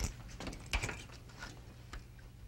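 A few soft, irregular knocks and scuffs of children's footsteps and of tools being moved about on a wooden workbench, over a faint steady low hum.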